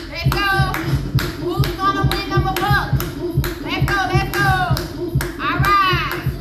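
Hand claps in time to upbeat music with a steady beat and a sung vocal.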